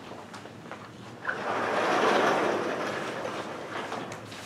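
A sliding classroom blackboard panel rumbling as it is moved, swelling for about a second and then fading over the next.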